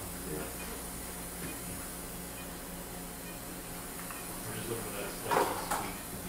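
Steady hum of operating-room equipment with a faint hiss, and a short louder noise about five seconds in.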